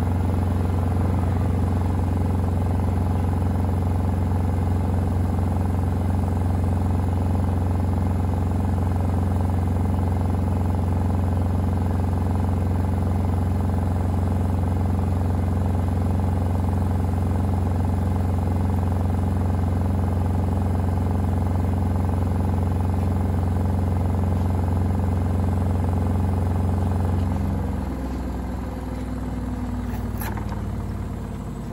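Gorenje UseLogic front-loading washing machine in its 1400 rpm final spin with a very unbalanced load: a loud, steady hum from the drum and motor. Near the end the spin begins to wind down, the hum wavering and falling in pitch and level.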